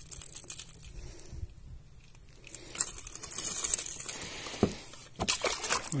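Rustling, crinkling handling noise with scattered light clicks, swelling for a couple of seconds about halfway through, as the hand-held phone and clothing rub and knock while the angler shifts in the kayak.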